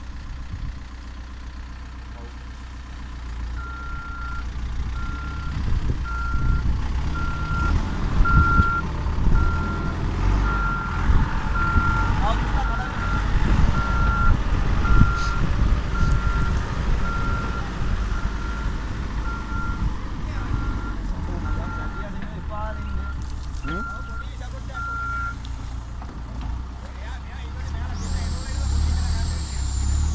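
A heavy machine's diesel engine running with its reversing alarm beeping evenly, about one and a half beeps a second; the beeping starts a few seconds in and stops a few seconds before the end, and the engine grows louder in the middle stretch.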